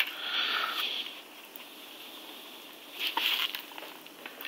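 Faint rubbing and rustling of a plastic hard-drive enclosure being handled as its clip-held plastic strip is worked loose by fingernail. There is a short click at the very start and another brief rustle about three seconds in.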